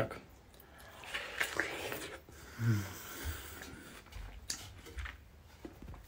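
A man chewing a mouthful of watermelon close to a phone's microphone, with a brief hum from him midway and a few dull low bumps.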